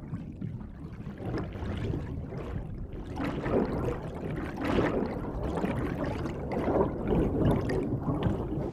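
Underwater water noise, churning and gurgling, growing louder from about three seconds in as the water is stirred.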